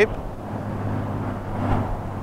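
Outdoor background: a steady low hum under faint even noise, of the kind given by distant road traffic or a running engine.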